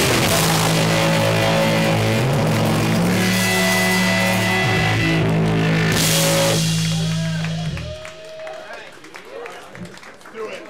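Live punk rock band playing loud: distorted electric guitars, bass and drum kit. About two-thirds of the way in the drums stop and the guitars and bass hold a final chord that cuts off near the eight-second mark, ending the song. Voices in the room remain after it.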